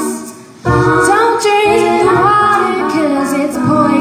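A woman singing live into a microphone over looped layers of her own voice from a loop pedal, unaccompanied by instruments. The sound dips briefly in the first half-second, then the full layered vocals come back in.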